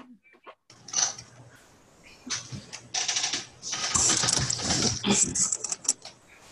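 Rustling and rapid clicking handling noise over a video-call microphone, with a low hum under it, as a laptop or webcam is moved about on a cluttered desk. It starts about a second in, gets louder from the middle and fades out at the end.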